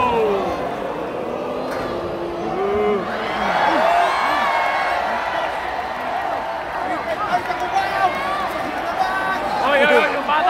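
Arena crowd noise: many voices shouting and cheering at once over a steady roar, swelling about three seconds in, with louder individual voices yelling close by near the end.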